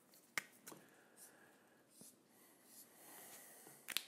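Near silence, with a few faint clicks and a soft rubbing sound about three seconds in: a felt-tip marker being handled and drawn on bare skin.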